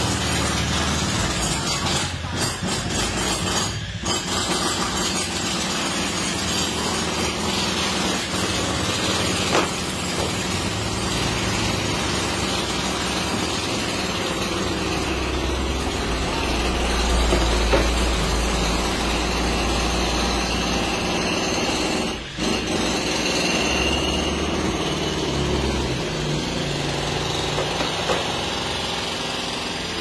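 Steady mechanical running noise of a motor or machine, with brief dips about two, four and twenty-two seconds in.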